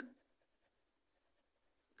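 Faint scratching of a pen writing a word on ruled notebook paper.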